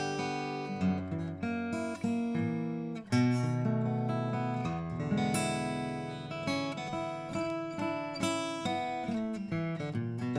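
Furch Rainbow OOM-CP acoustic guitar, cedar top with padauk back and sides, played with a pick: strummed chords and picked notes ringing out. About three seconds in, the playing breaks off briefly, then comes back with a strong strum, the loudest moment.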